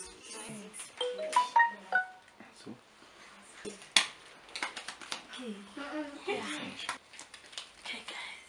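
A quick run of short, clear electronic tones from a mobile phone, each at a different pitch, stepping up and then down, followed by a single sharp click about halfway through.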